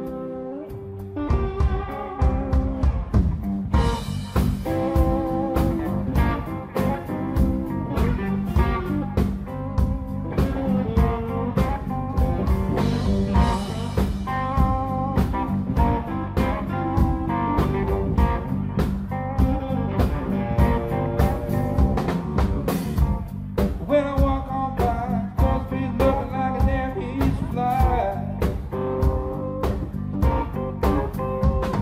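Live band playing a song on two electric guitars, electric bass and a drum kit. The song starts about a second in and the full band is playing by about four seconds in.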